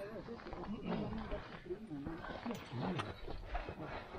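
Low, muttered voices and effort grunts from climbers scrambling over granite. A couple of sharp clicks, about two and a half and three seconds in, come from crampon points scraping on the rock.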